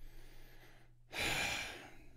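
A man's heavy sigh, one loud breath out into a close microphone lasting under a second, about a second in, a sign of disappointment at bad news; a low steady hum runs underneath.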